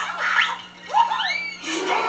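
Film soundtrack played through a TV: music and effects, with a shrill pitched cry that swoops up and back down about a second in.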